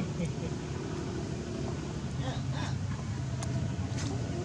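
Steady low rumble of a running motor vehicle engine, with faint distant voices over it.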